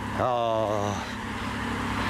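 A small car's engine running close by, with a short spoken word early on. In the second half a rushing road noise builds up.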